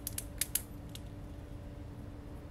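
Thin plastic nursery pot crackling as it is squeezed to loosen a succulent out of it: a quick cluster of sharp clicks in the first half second, and one more about a second in.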